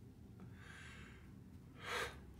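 A man's breathing, faint and unvoiced, as he chokes back tears: a soft breath about half a second in, then a louder, sharp intake of breath like a gasp just before the end.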